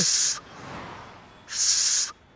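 Two short, hissing puffs of breath blown onto a mobile phone, about a second and a half apart, with a softer airy rush between them.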